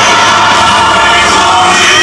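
Large gospel mass choir singing loudly, the voices holding long notes together.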